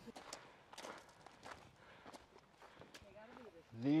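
Faint, irregular footsteps on a gravelly, stony trail.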